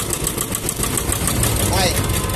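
Kubota ZK6 walk-behind cultivator's engine idling steadily, with an even run of firing ticks.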